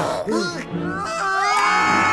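A group of high, cartoonish Smurf voices crying out together in alarm: short gliding cries, then a long scream held by several voices at once from about halfway in.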